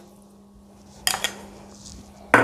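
A metal spoon clinking against a cooking pot in a quick cluster of knocks about a second in, as half a spoon of salt goes into the pot of potatoes and water.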